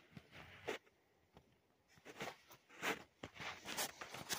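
Footsteps on dirt ground with rustling handling noise from the carried camera, a series of irregular scuffs, louder in the second half.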